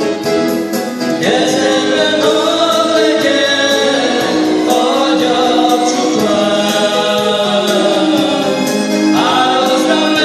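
Live gospel song played by a small band of violin, acoustic guitar, keyboard and electric guitar, with several male voices singing together, the singing coming in about a second in.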